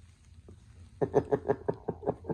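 A person laughing, a quick run of short 'ha' bursts about six a second, starting about halfway through.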